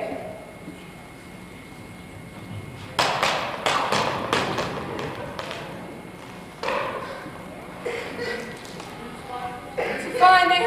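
A cluster of thumps and taps about three seconds in, with a few more later, from a performer moving on a stage.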